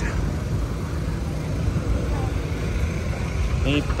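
Busy street ambience: a steady low rumble of traffic and motor scooters under background crowd chatter.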